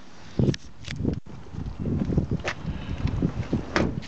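Wind rumbling on the microphone while the camera is carried, with a loud handling thump about half a second in and a couple of sharp clicks later.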